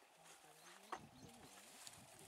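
Near silence, with faint low sounds that rise and fall and a single sharp click about a second in.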